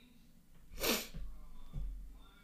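A person sneezing once, about a second in: a sudden sharp burst that falls in pitch.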